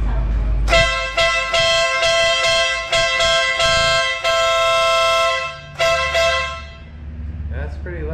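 Denali aftermarket motorcycle horn sounding: one long blast of about five seconds with a few brief breaks, then a second blast of about a second.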